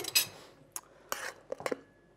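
A metal spoon and bowls clinking and knocking as they are handled, about five short strikes in the first second and a half or so.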